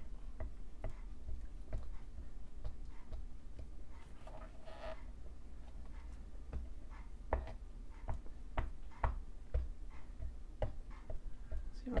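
Ink pad dabbed again and again onto a rubber stamp on a clear acrylic block, inking the stamp: a run of light, irregular taps and clicks.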